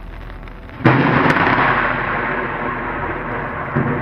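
Close thunder from a nearby lightning strike: a sudden sharp crack about a second in, then a loud rolling rumble that carries on.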